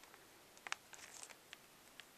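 Near silence with a few faint clicks and light rustles from a VHS box being handled, first about two-thirds of a second in and again around a second in.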